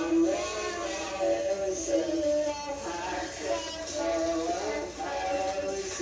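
Voices singing a song with held, sliding notes, a child's voice among them, heard through a television's playback of an old home video.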